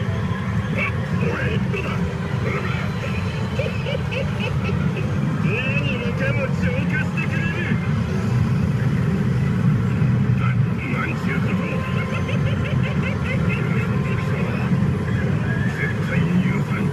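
Loud, steady din of a pachinko parlour, with voice lines and effects from a CR Lupin the Third pachinko machine's animated screen heard over it.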